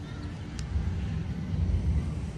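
Wind buffeting the microphone: an uneven low rumble that swells near the end.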